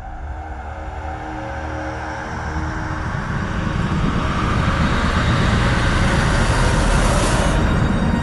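Motorcycle engines drawing closer and growing louder over dramatic background music, with a rising rush of sound that cuts off suddenly near the end.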